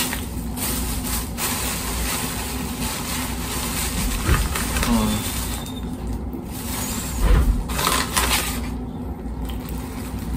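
A paper takeout bag and napkins rustled and handled in irregular bursts while a man rummages for a piece of fried chicken, over a steady low background hum.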